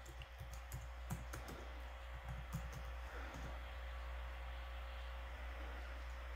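Typing on the keyboard of a white 2009 MacBook: a quick, uneven run of key clicks over the first three seconds or so, then only a faint steady hum.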